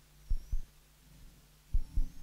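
Electronic sound from a Teenage Engineering OP-1 synthesizer processed through a Ciat-Lonbarde Plumbutter and a Bastl Thyme: deep synthetic thumps in two close pairs, like a heartbeat, over a faint low drone.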